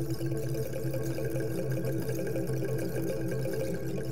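Soundtrack of a promotional film played over the hall's speakers: sustained music tones with a pouring, trickling sound effect over them.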